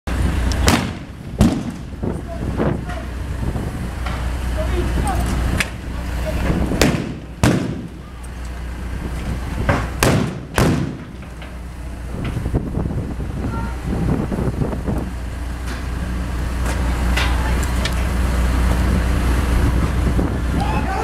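A string of about ten sharp bangs and cracks, spread unevenly, from a riot-police clash, over a steady low engine hum from a police armoured vehicle running nearby.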